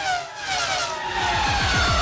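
Race car engine sound effect in an outro jingle: the engine note falls steadily in pitch as if the car is passing by, and music builds up underneath.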